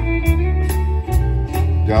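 Live country band playing a short instrumental gap between sung lines: strummed acoustic guitar, electric bass and an electric guitar fill over drums keeping a steady beat of about three hits a second.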